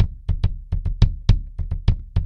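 Bass drum struck by a single pedal's felt beater in quick, unevenly spaced groups of strokes, about six strokes a second: doubles, triples and four-stroke groups played with the heel-up tap-slide foot technique.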